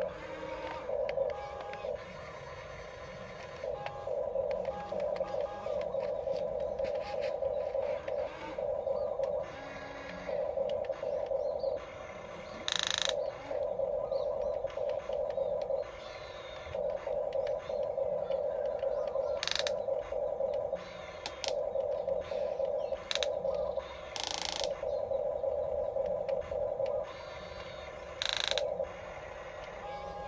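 Radio-controlled excavator's small electric motors whining in repeated bursts of one to a few seconds as the arm, bucket and turntable move, stopping briefly between movements. A few sharp clacks cut in now and then.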